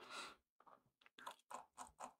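Near silence: a faint intake of breath near the start, then a few soft, short clicks.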